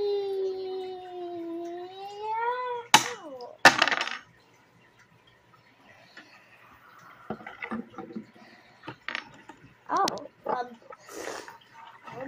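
A child's voice imitating a toy plane's engine: one long hum, held steady and then rising in pitch for about three seconds, cut off by two sharp, noisy crash sounds. Later come quieter scattered clicks and short vocal noises.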